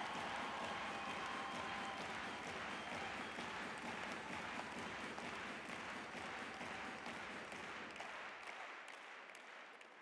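Audience applauding steadily, then dying away over the last couple of seconds.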